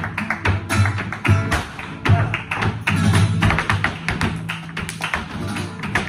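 Flamenco footwork and hand claps with flamenco guitar playing tarantos: a dense run of sharp heel and toe strikes and claps over the guitar's low notes.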